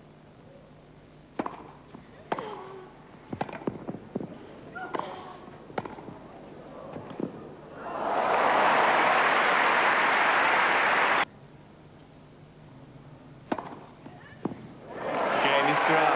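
Tennis rally on a grass court: a string of sharp racket-on-ball hits and bounces, then crowd applause for about three seconds that cuts off abruptly. A couple more ball bounces follow, and applause rises again near the end.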